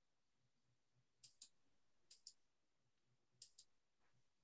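Near silence with three faint pairs of computer mouse clicks, about a second apart.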